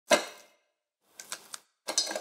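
Ice cubes in a tall glass clinking as a lemon wedge is pressed and squeezed over them. One sharp, ringing clink comes right at the start, and a few small clicks follow about halfway through. More clicks start again near the end.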